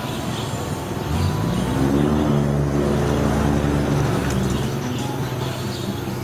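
A motor vehicle's engine close by. It rises in pitch as it accelerates about a second in, holds steady, then fades toward the end.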